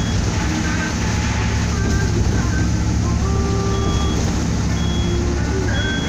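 Steady low rumble of a Golden Dragon coach's engine and tyres, heard from inside the cabin while it drives. Faint short tones of different pitches come and go over it.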